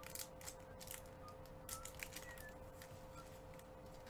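Faint crinkling and rustling of a foil trading-card pack wrapper as the cards are slid out of it by hand, over a faint steady hum.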